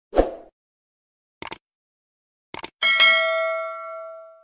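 Subscribe-button animation sound effects: a short swish, two pairs of quick clicks, then a bright bell ding that rings and fades away over about a second and a half.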